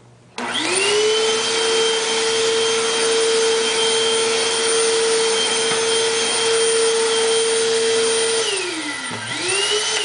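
Eureka upright vacuum cleaner switched on about half a second in, its motor whining up to speed and then running steadily with a rushing airflow as it is pushed over carpet. Near the end it is switched off and winds down, is briefly spun up again, and winds down once more.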